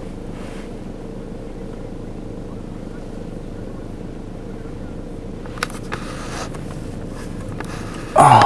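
Steady low hum of an idling vehicle engine, with a few faint clicks about five and a half to six and a half seconds in.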